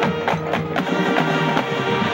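Marching band playing, horns and drums together, with a run of quick drum strokes about a second in.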